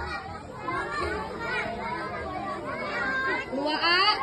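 A group of children's voices chattering and calling out over one another while playing.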